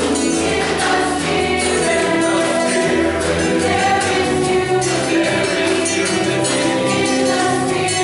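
Mixed choir of men and women, a Salvation Army songster brigade, singing a gospel-style song in sustained chords.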